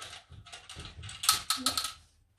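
Plastic Connect 4 disc dropped into the grid, clattering down a column in a quick run of clicks, loudest a little over a second in.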